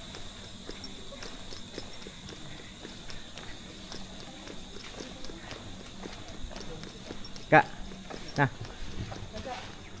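Footsteps of a small group walking on concrete paving blocks: a steady run of soft shoe taps and scuffs.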